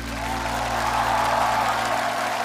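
Audience applause and cheering breaking out and swelling over the last held piano chord.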